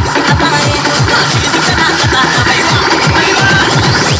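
Loud electronic DJ dance music with fast, pounding bass-drum beats. A synth sweep rises in pitch over the second half.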